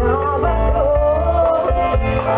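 Live band music with a wavering sung melody over a heavy bass line.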